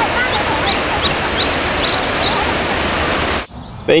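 Waterfall rushing in a loud, steady wash of falling water, with faint high chirps over it. It cuts off abruptly shortly before the end.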